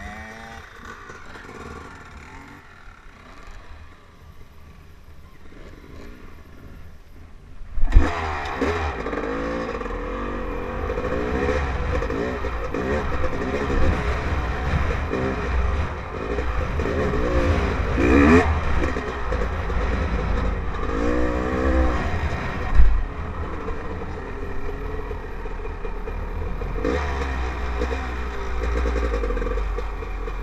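Dirt bike engine heard from the rider's helmet, fairly quiet at first. From about eight seconds in it gets loud suddenly and revs up and down as the bike rides along, over a low rumble of wind on the microphone.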